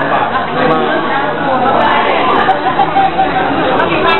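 Several people talking at once, their voices overlapping in a lively chatter, in a room that adds some echo.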